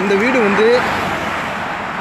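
A car passing on the road: its tyre and road noise is loudest near the start and slowly fades away. A man's voice is heard briefly over it at first.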